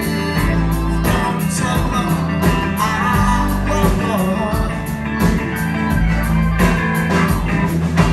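Live rock band playing, an electric guitar to the fore over bass and drums with a steady beat.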